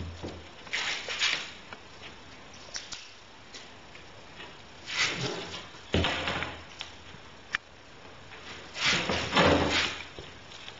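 Handling noises from a tape measure and straightedge on a sheet of plywood: several short scrapes and knocks, about a second in, twice around the five- and six-second mark, and a longer one near the end.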